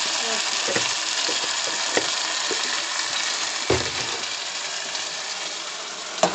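Cubed potatoes frying in a metal pot on a gas stove: a steady sizzle, with a few spoon knocks against the pot, the loudest about two-thirds of the way through.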